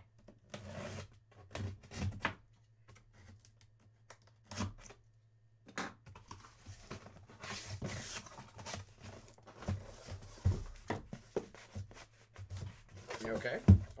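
A cardboard shipping case being opened by hand: packing tape tearing and cardboard flaps rustling and scraping, with scattered knocks and a sharp thump near the end.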